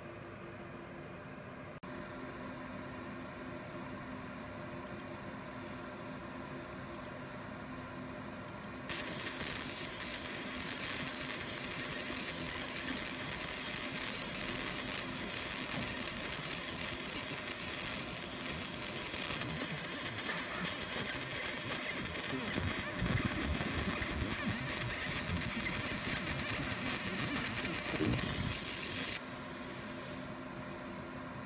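Fiber laser marking machine cutting a filigree pendant out of brass sheet: a steady hiss of the beam working the metal starts suddenly about nine seconds in and cuts off abruptly just before the end. Before it starts, only a low steady machine hum.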